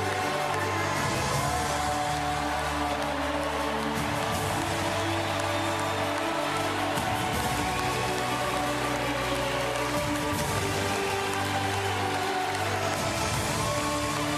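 Music with sustained bass notes over the steady noise of a large arena crowd cheering and applauding.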